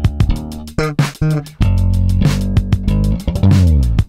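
Sterling by Music Man S.U.B. Ray4 four-string electric bass played direct in a funk line, with punchy plucked notes and a held low note, over a steady Oberheim DMX drum-machine beat. Near the end the bass slides down in pitch.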